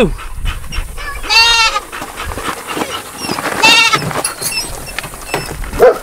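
A goat bleating twice, each a short, wavering cry, the first about a second and a half in and the second near four seconds, with light knocks and clicks between them.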